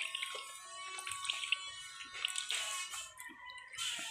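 Coconut milk trickling and dripping from a hand-squeezed sieve of grated coconut into a plastic tub: the second pressing of the coconut milk.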